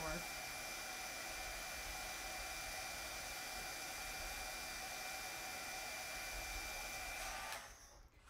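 Craft embossing heat tool running steadily with a thin high whine, blowing hot air onto puff paint to make it puff up; it switches off abruptly shortly before the end.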